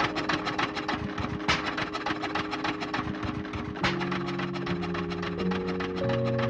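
Electronic dance music from a DJ mix played on CDJ decks: a fast, even run of ticking percussion over held synth tones. The bassline drops away early on and comes back in about four seconds in.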